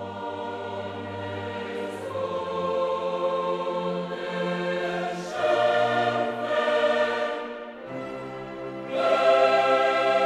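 Choral music with long held chords, swelling louder about five seconds in and again near the end.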